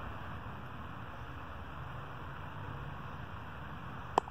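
Steady, even rumble and hiss of distant highway traffic, with no distinct events.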